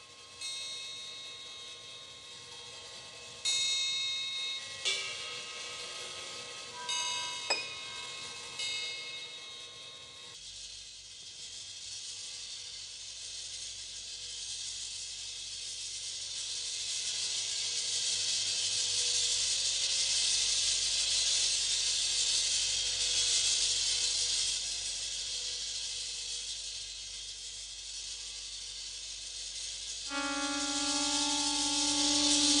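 Bells or chimes struck several times over the first ten seconds, each strike ringing out with bright overtones. After that a steady hissing noise takes over, swelling and then easing off.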